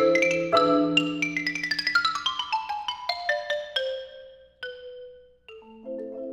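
Xylophone and marimba ensemble playing a ragtime-era waltz: a fast run of struck notes falls in pitch over held low marimba chords. The run fades to a few single ringing notes, and the marimbas come back in with waltz chords just before the end.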